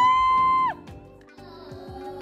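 A young girl singing on stage, gliding up into a high note and holding it until it stops abruptly under a second in; after that only quieter, indistinct hall sound remains.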